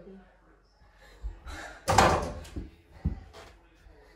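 A mini basketball striking an over-the-door mini hoop: a loud bang of the backboard against the door about two seconds in, with a few softer thumps before and after.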